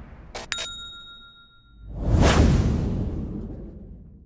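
Animation sound effects: a few quick clicks with a bright ding ringing on for about a second, then a loud whoosh about two seconds in that fades away.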